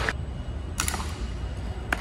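Three short sharp clicks about a second apart over a steady low hum.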